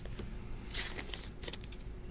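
Thick patch trading card handled between fingers as it is turned over: faint rustling and scraping of card stock in a few short bursts around the middle, with small clicks.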